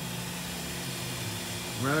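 Steady mechanical hum of a powered-up Mazak VCN-530C vertical machining center standing idle.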